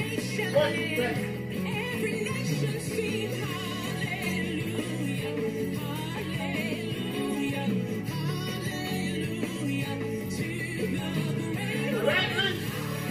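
Gospel music with a singing voice over a steady beat.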